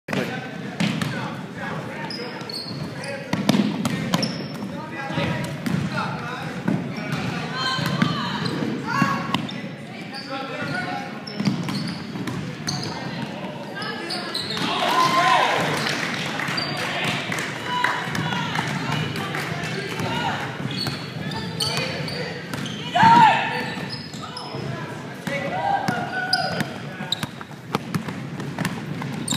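Live basketball play: a ball bouncing on a hardwood court and sneakers squeaking as players run, with players and onlookers shouting. The shouts are loudest about halfway through and again near 23 seconds.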